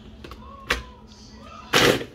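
Electric mini food chopper pulsed once near the end, its motor and blade grinding frozen pineapple chunks with ice cream, after a single sharp click about two-thirds of a second in.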